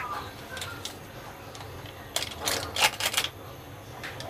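A paper seasoning sachet rustling and being tapped as spice powder is sprinkled over sliced eggplant in a glass dish: a few short, crisp rustles and taps about two to three seconds in.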